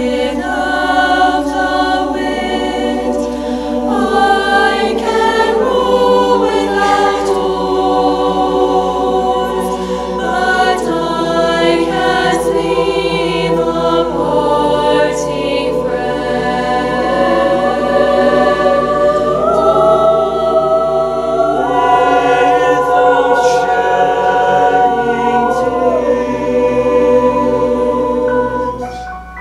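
Mixed teenage choir singing a slow Swedish folk song in sustained multi-part harmony, the phrase tapering off near the end.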